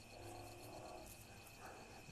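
Faint insects in a summer field: a steady high trill with a second, regularly pulsing chirp above it.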